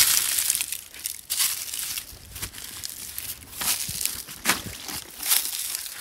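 Footsteps crunching through dry fallen leaves and brittle grass, roughly one step a second.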